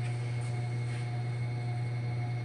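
Steady low hum with a faint, steady higher whine above it. It does not change in level or pitch.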